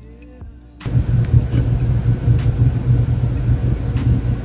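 A short rising tone, then about a second in a loud, deep rumbling suspense sting that holds steady with a pulsing bass throb.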